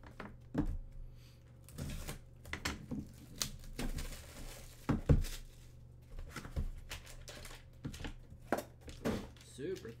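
Sealed cardboard trading-card boxes being handled and opened by hand: a run of knocks and clicks as the boxes are set down and moved, with the crinkle and tearing of plastic and foil wrapping. The sharpest knock comes about halfway through.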